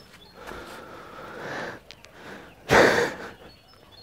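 A single short, loud snort-like exhale close to the microphone, a little under three seconds in, over faint outdoor background.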